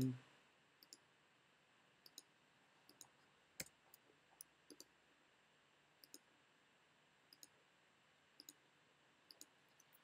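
Faint, scattered computer mouse clicks, a dozen or so, with one a little louder about three and a half seconds in, over near-silent room tone.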